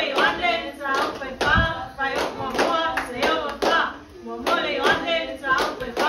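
Hand clapping, many sharp claps through the whole stretch, mixed with voices chanting or singing together.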